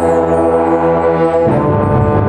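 Concert band playing a loud, sustained low brass chord, which gives way to a busier new chord about one and a half seconds in.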